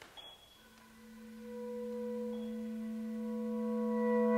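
Live contemporary chamber music: a single held tone with overtones fades in from a quiet start about half a second in, swells, then stays steady.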